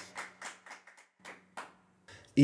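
A few people clapping after a song, the claps growing sparse and fading out.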